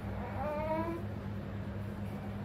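Two-month-old baby giving one short, rising whimper about half a second in, over a steady low hum. The infant is fussing after his vaccine injections.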